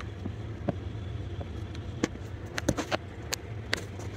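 Steady low hum of a small wind turbine running, with scattered sharp clicks and taps over it, the loudest a cluster between about two and four seconds in.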